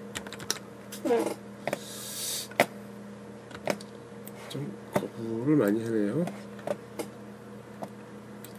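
Scattered sharp clicks of a computer mouse and keyboard, a dozen or so at uneven intervals, with a man's brief low mumbling twice in between.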